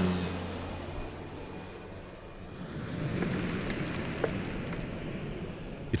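Air Tractor agricultural plane flying low overhead: its engine and propeller drone drops in pitch as it passes, fades, then swells again about halfway through as the plane comes in once more.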